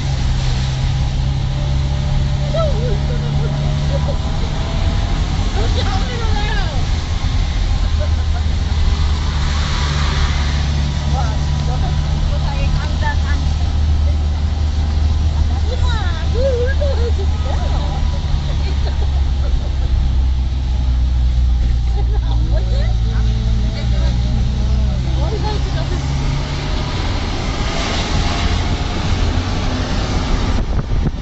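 Vehicle engine and road noise heard from inside the cabin while driving: a steady low drone whose pitch steps up and down several times as the engine speed changes. Faint voices can be heard under it.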